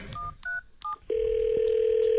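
Telephone keypad dialing: four quick two-tone DTMF beeps, then about a second in a long steady ringback tone on the line as the call rings through.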